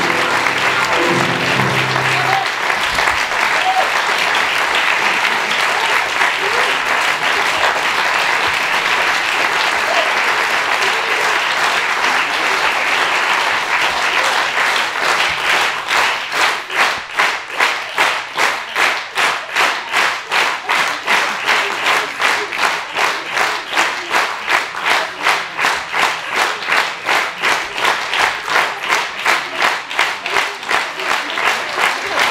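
Audience applause, with an upright piano's last notes dying away in the first couple of seconds. About halfway through, the applause turns into rhythmic clapping in unison, about two or three claps a second.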